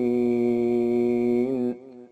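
A man reciting the Quran in melodic tartil style, holding one long, steady note to close a verse. The note cuts off about a second and a half in, leaving a brief echo.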